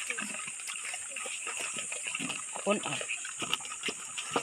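Wet pig mash of rice bran and corn squelching and splashing as it is mixed by hand in a basin, a run of small irregular wet clicks and slaps, with a couple of brief voices.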